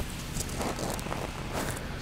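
Faint footsteps and rustling over a low steady hum, with a few light ticks.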